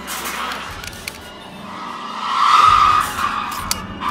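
A loud screech that swells about one and a half seconds in, peaks near the middle and fades, followed by a few sharp clicks near the end.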